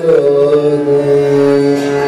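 Hindustani classical singing in raga Bhairavi: a male voice holds one long note, settling after a short downward slide near the start, over a steady harmonium and tanpura drone.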